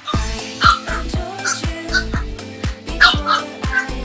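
Pop song with a steady beat, with puppies yipping and barking over it.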